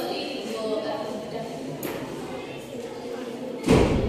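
Voices talking in the background, then one sudden loud thump near the end.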